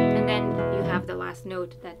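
Nylon-string classical guitar, a 2012 Jean Rompré, letting a rolled arpeggio chord ring. The notes die away about a second and a half in.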